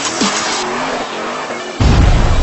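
Electronic intro music layered with a car sound effect, then a sudden loud, low boom near the end.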